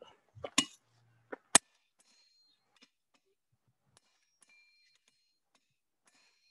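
Blacksmith's hammer striking hot metal on an anvil: three sharp blows in the first second and a half, the last the loudest, then a few faint light clinks with a thin ring.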